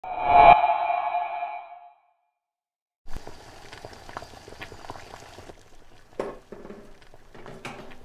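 A bright ringing ping with several overtones that fades away over about a second and a half. After a second of silence, faint room tone with a few small clicks and a soft knock.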